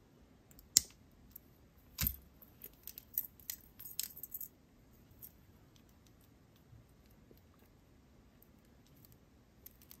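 Small metal clicks and clinks of jewelry pliers working a jump ring onto a metal dragonfly pendant: a sharp click near the start, another about two seconds in, then a quick run of light clicks over the next two seconds.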